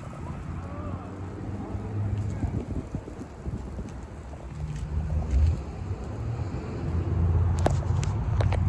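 Wind buffeting a handheld microphone outdoors: an uneven low rumble that rises and falls, growing louder toward the end, with a few sharp clicks near the end.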